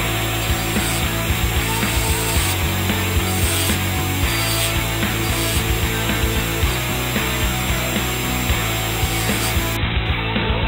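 Flex-shaft rotary tool running, its burr grinding against a small steel workpiece with a continuous rasp broken by small irregular ticks.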